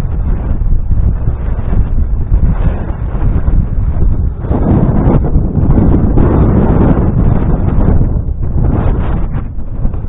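Wind buffeting the camera's microphone: a loud, gusty rumble with no speech, swelling into a stronger gust from about halfway through and easing off near the end.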